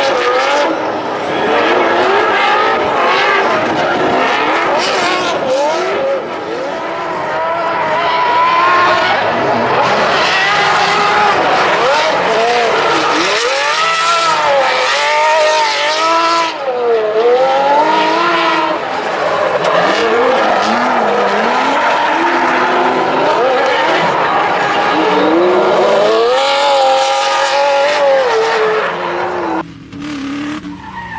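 A drift car's engine revving up and down hard through a long run of slides, over the continuous squeal and scrub of tyres skidding sideways. The loudness dips briefly near the end.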